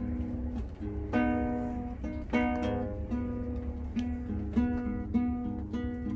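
Acoustic guitar played solo, strumming chords in a steady repeating pattern.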